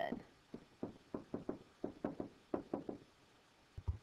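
A stylus pen tapping on a tablet screen while handwriting: a quick, irregular run of light taps.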